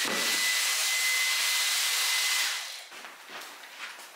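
Cordless stick vacuum cleaner running: a loud rush of air with a steady high whine from the motor, switched off about two and a half seconds in and winding down.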